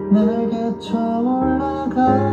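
A man singing a slow worship song over a sustained instrumental accompaniment, with a short sibilant consonant just before a second in.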